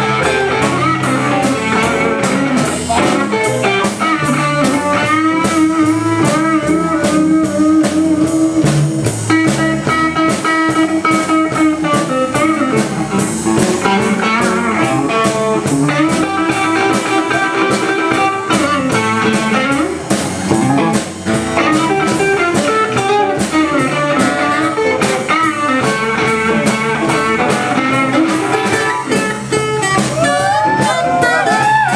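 Live blues band playing with no singing: electric and acoustic guitars over a drum kit keeping a steady beat, with bending lead guitar lines.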